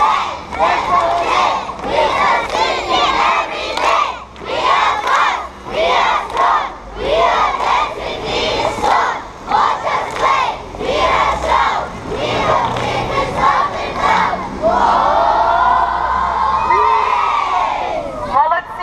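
A large crowd of children shouting together in short bursts, one about every second, then a single long drawn-out shout near the end.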